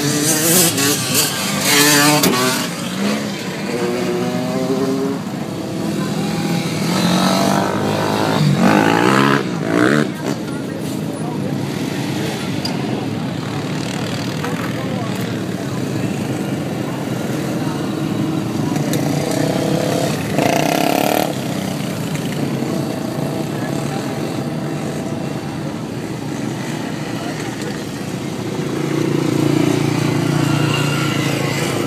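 Engines of off-road vehicles, ATVs, a dune buggy and lifted trucks, running and revving as they pass close by, with several rising and falling revs in the first ten seconds and a short loud burst about twenty seconds in.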